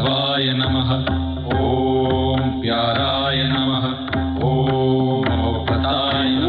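Film song music: long, chant-like vocal notes held over a steady drone and bass line, with light percussion ticks.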